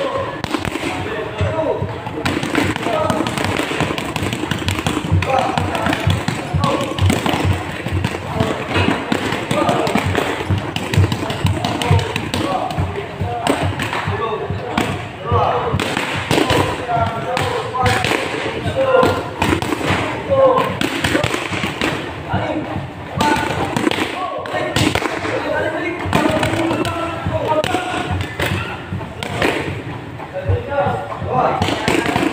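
Boxing gloves smacking focus mitts in repeated punches and short combinations, with people talking in the gym.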